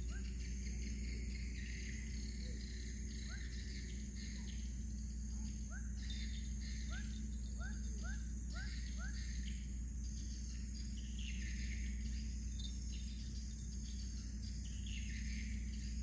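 Tropical riverbank ambience: a steady chorus of crickets or similar insects with a continuous high buzz over a low steady rumble. In the middle, a bird gives a quick run of about six short rising chirps.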